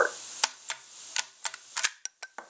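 Sharp metal clicks and clacks of an SKB/Ithaca 900 shotgun's action being jerked apart by hand to strip a shell, about six in two seconds. The sign of a locking lug that has not fully disengaged from the bolt.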